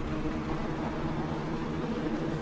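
Lasko box fan running on high: a steady rush of air with a faint low motor hum. No inverter whine is heard, the sign of the pure sine wave power it runs on.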